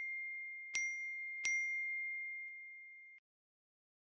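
Bell-like 'ding' chime sound effect struck twice, about a second and a second and a half in, while the ring of an earlier strike is still fading. Each strike is a single clear high ringing tone that fades slowly, and the ring cuts off abruptly a little after three seconds.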